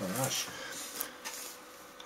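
A man's short wordless murmur at the start, then faint rustling handling noise with a small click about a second in.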